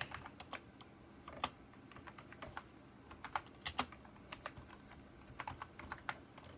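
Typing on a computer keyboard: faint, irregular key clicks, a few per second, with a couple of louder keystrokes.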